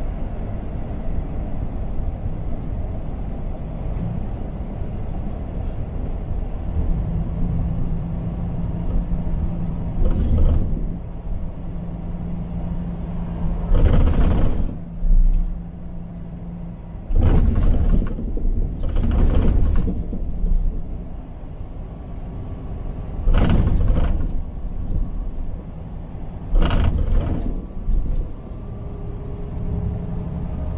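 Steady engine and road rumble inside a semi-truck cab on the highway. Six short, loud bursts of noise, each about a second long, break in over it.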